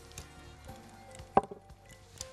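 A single sharp clink about one and a half seconds in: a spoon knocking against a glass mixing bowl as sugar is stirred into melted butter and eggs, over faint background music.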